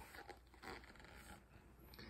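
Faint rustling and scraping of a hardcover picture book's paper pages as it is handled and a page turned, in a few short soft strokes.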